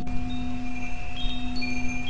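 Wind chimes tinkling in scattered single high notes over a steady low drone, the ambient bed of a sound-healing track.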